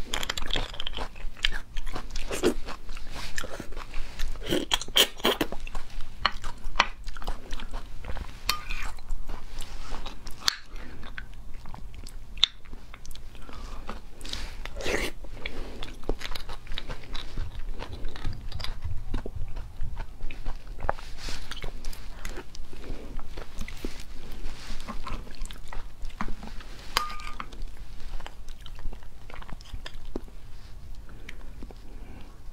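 Close-miked eating of braised beef bone marrow: wet chewing, sucking and mouth smacks, with clicks and scrapes of a metal spoon digging marrow out of the bone rings. A dense string of short clicks and smacks.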